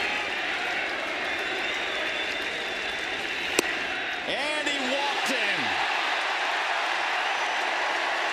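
Steady ballpark crowd noise, with one sharp pop about three and a half seconds in as a 100 mph fastball smacks into the catcher's mitt for ball four, drawing shouts from the crowd.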